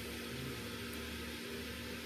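Steady background noise in a pause between words: an even hiss with a faint low hum, with no separate events.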